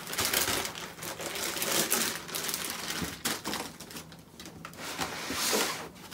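Plastic compression bag crinkling and rustling as it is folded and pressed flat into a suitcase, with a quieter stretch a little past the middle.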